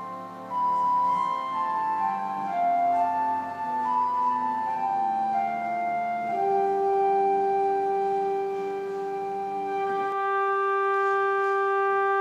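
Murray Harris pipe organ playing a slow improvisation: a solo melody moving in steps over held notes, then settling on a long sustained note and, near the end, a quieter held chord.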